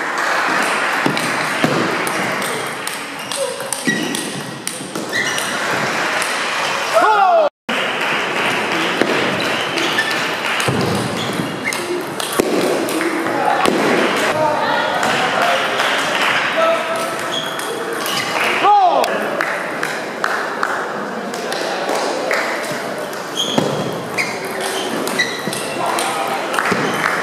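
Table tennis rallies: the ball clicking off rackets and the table in quick exchanges, over a steady murmur of voices in the hall. The audio drops out for an instant about a third of the way through.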